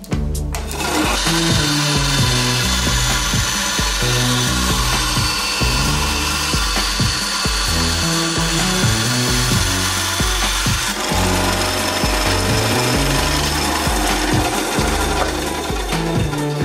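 Cheap benchtop band saw switched on, starting about a second in, then running and cutting through a pine block. Background music plays underneath.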